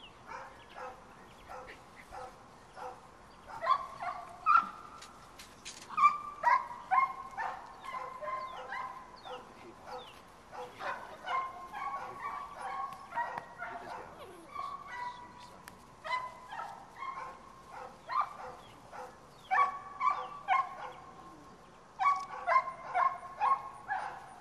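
Seven-week-old puppies barking and yipping in short, high, repeated bursts while tugging at a rag on a flirt pole, with the loudest barks coming in clusters.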